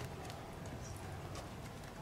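Faint outdoor background noise with a low rumble and scattered light taps and clicks.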